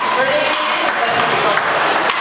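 Table tennis ball clicking off bats and the table, a few sharp hits about half a second apart, over a steady hubbub of voices in a reverberant games room.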